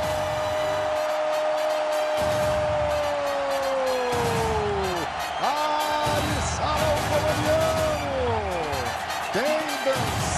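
A TV football commentator's long drawn-out goal cry, held on one pitch for about five seconds before falling away, followed by shorter rising and falling shouts over a cheering stadium crowd.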